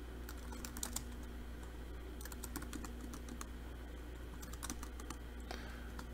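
Computer keyboard being typed on: faint keystroke clicks in several short bursts as a command is entered, over a steady low hum.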